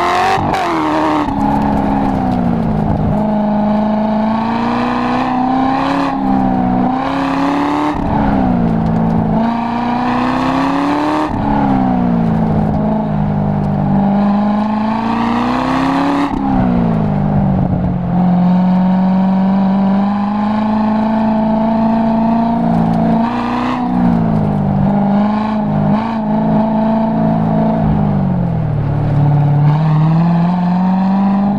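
Corvette V8 engine heard from inside the open-top cabin, driven hard through a coned autocross course: the revs climb and fall again and again as the car accelerates, lifts and shifts between corners, with several sudden drops in pitch.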